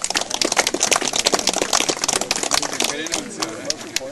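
A small crowd clapping: dense, irregular claps that thin out and stop near the end, with voices talking underneath.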